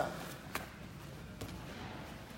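Two grapplers in gis moving on a foam training mat: faint rustling, with a sharp slap about half a second in and a softer one a little before the end.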